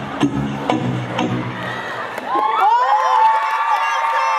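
Pop dance music with a steady beat stops about two seconds in, and an audience breaks into loud, high-pitched cheering and screams as the dance routine ends.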